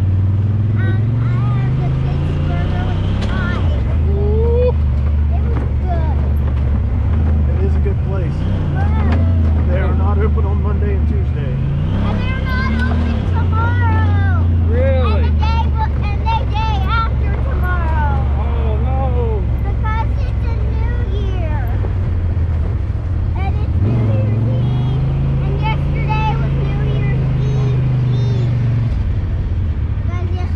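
Honda Talon side-by-side's parallel-twin engine running under way, its revs rising and falling several times as it is driven.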